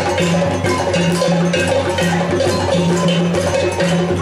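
Live African drumming: an ensemble of drums playing a fast, steady, repeating rhythm, with a ringing metal bell pattern cutting through on top.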